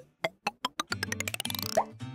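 Editing sound effect: a run of short pops that speed up over about a second and a half, closing with a quick rising pop, over faint background music.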